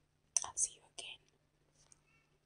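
A woman whispering briefly in two short, breathy bursts, about half a second and a second in.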